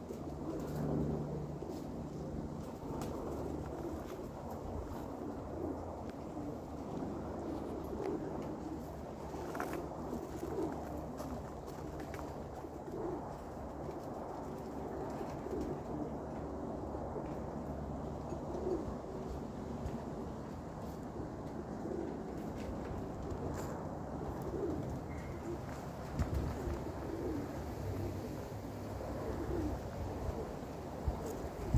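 Domestic pigeons cooing, many short coos repeated over and over, above a low steady rumble.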